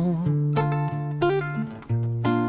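A band playing an instrumental gap between sung lines of a pop song, led by acoustic guitar, with held chords that change near the end.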